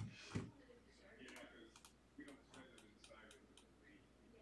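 Faint, scattered clicks and taps, with a soft knock at the very start.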